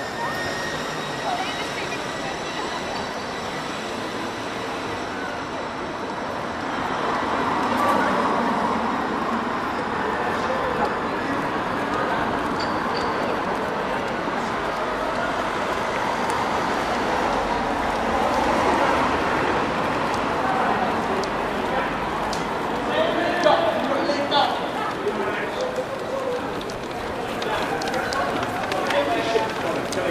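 Busy outdoor ambience: indistinct voices and chatter over a steady rushing background noise.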